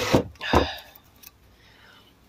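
A Kawasaki ER-5 cylinder head being turned over on a wooden workbench: a short scrape and a knock at the start, then a second knock about half a second in as it is set down.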